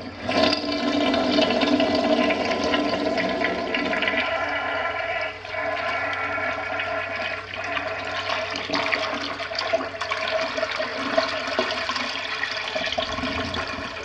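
1989 American Standard Glenwall wall-hung toilet flushing: a sudden loud rush of water with a steady whining hiss over it, easing a little after about five seconds and tapering off near the end as the bowl refills.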